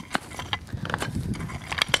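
Hand tools chopping and scraping into dry hillside soil as vegetation and duff are grubbed out. An irregular run of strikes, with sharp ones just after the start and near the end.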